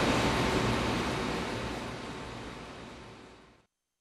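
Steady background noise of a large laboratory hall, an even rushing noise with a low rumble underneath, fading out gradually and cutting to silence about three and a half seconds in.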